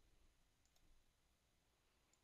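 Near silence: room tone, with a couple of faint computer-mouse clicks a little under a second in.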